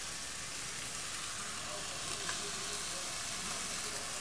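Steady sizzle of a pot of oil, onion and tomato cooking on a lit gas burner as fish is layered in, with one faint tick a little after two seconds.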